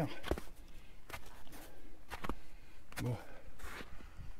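Hiker's footsteps on the old snow of a névé, a steady series of steps about one every three-quarters of a second.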